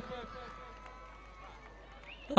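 Faint, distant voices over low background hum, with no nearby sound standing out.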